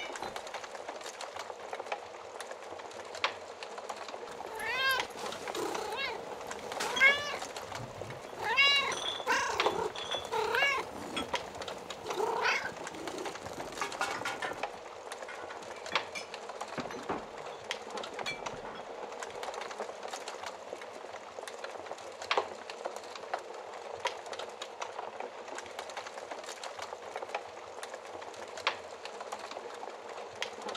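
A cat meowing about six times in a row, each call rising then falling in pitch, starting a few seconds in and stopping about halfway through. Underneath, a wood fire crackles steadily with scattered sharp pops.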